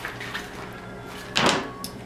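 Handling noise as a fabric cosmetic bag and small beauty products are moved about on a table, with one loud thud about one and a half seconds in.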